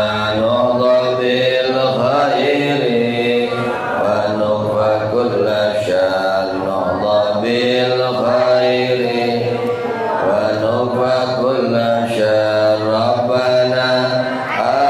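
A man's voice chanting a prayer melodically into a microphone, holding long, wavering notes without a break.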